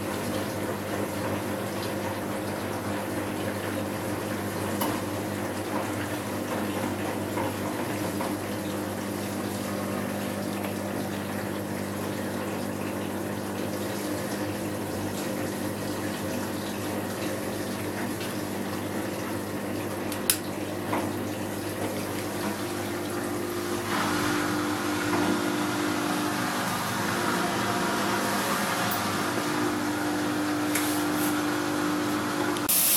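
Front-loading washing machine tumbling a load of wet laundry in its drum, with a steady motor hum and water sloshing, in the cool-down after the main wash. There is a single sharp click about twenty seconds in. A few seconds later a second, higher hum with a hiss sets in and the whole sound gets a little louder.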